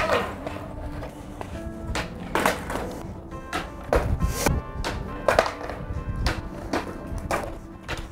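Background music with steady held notes, over the sharp clacks of a skateboard's wooden deck and wheels striking asphalt several times as heelflips are popped and the board lands or flips over.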